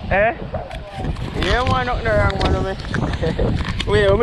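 A person's voice in short phrases, one drawn out for about a second in the middle, over steady wind noise buffeting the microphone.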